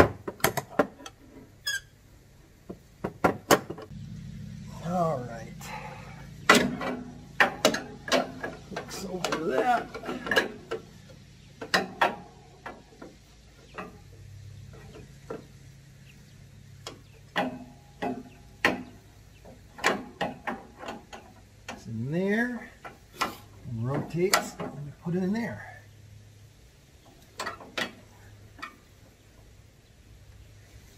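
Irregular metal clinks, clicks and knocks of hand tools and steering-rod parts being handled and fitted to the front steering linkage of a riding mower.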